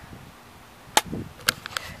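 Two sharp clicks about half a second apart, followed by a few fainter ticks, over a quiet background.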